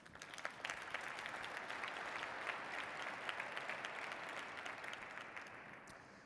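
Audience applauding: a dense patter of many hands clapping that builds within the first second, holds, and fades away near the end.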